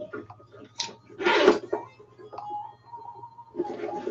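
A handbag being opened by hand: a sharp click just under a second in, then a short rasp of its zipper being pulled open, with small handling sounds around it.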